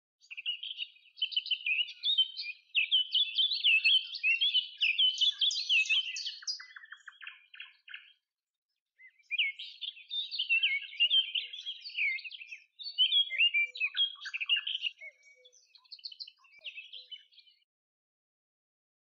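Birds chirping and twittering in quick, busy runs of high chirps, breaking off for about a second midway, then resuming and thinning out near the end.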